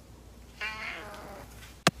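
Tabby cat meowing once, about half a second in: a short call that falls in pitch. A single sharp click follows near the end.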